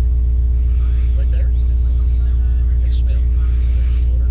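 Loud, steady low-pitched electrical hum with a buzzing string of overtones, drowning out faint speech beneath it.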